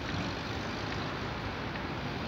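Steady low rumble and hiss of a tram rolling slowly out of its depot over curved track, with wind on the microphone.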